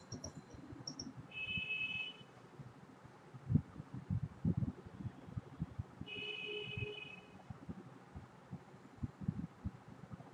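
Two electronic beep tones, each about a second long and some five seconds apart, like a computer or phone notification sound, over scattered faint low knocks.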